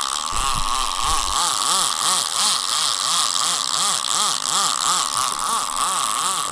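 Baitcasting reel's line-out clicker buzzing as line is pulled steadily off the spool by a boat running the bait out. It rises and falls in pitch about three times a second.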